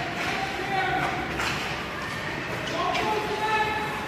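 Unintelligible calls and shouts of youth hockey players echoing around an indoor ice rink, with a couple of sharp knocks from sticks and pucks on the ice.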